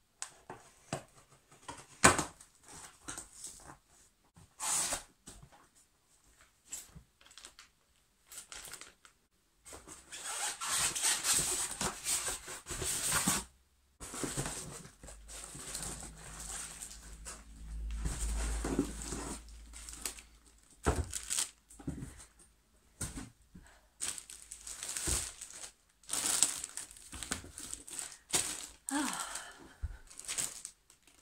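A cardboard box being unpacked: a knife slitting packing tape, then cardboard flaps being torn and rustled, with scattered knocks and thumps from handling, and plastic wrapping crinkling near the end.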